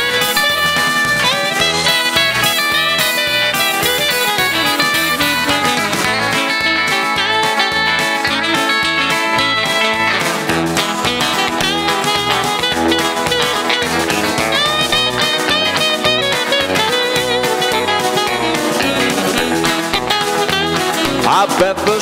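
Saxophone solo over a live band's steady beat, an instrumental break between sung verses; the singing comes back in at the very end.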